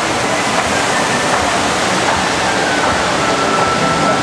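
A large fountain's water jets rushing and splashing down into its pool: a loud, steady rush of falling water.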